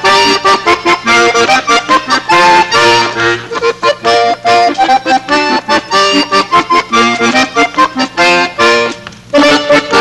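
Two accordions playing a lively duet in quick, short notes and chords, with a brief break in the playing near the end.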